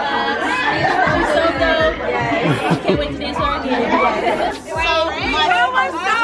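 Several women talking excitedly over one another, with background music's low beat underneath.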